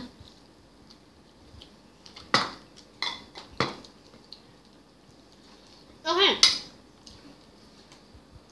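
Tableware being handled: three sharp clinks of a bowl and cutlery against the table, about half a second apart, a couple of seconds in. A short vocal sound from the boy with a falling pitch, and another clink, follow about six seconds in.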